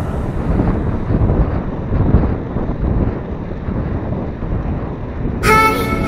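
Rumbling wind and road noise on the microphone of a handlebar-mounted camera as a bicycle rolls along a paved street. Near the end, several held tones start suddenly.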